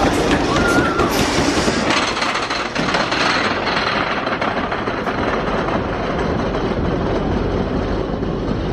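Wooden roller coaster train rolling over its wooden track, a steady rumble and clatter with a few sharp clicks in the first two seconds.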